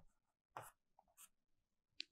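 Marker pen writing on a whiteboard: a few brief, faint scratching strokes against near silence.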